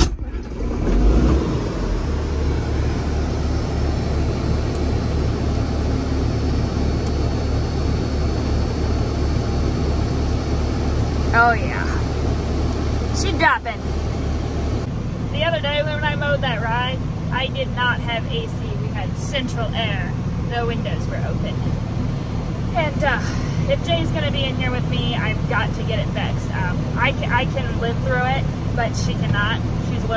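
John Deere 4440 tractor's six-cylinder turbo diesel running steadily, heard from inside the cab. From about halfway, a woman talks over the engine.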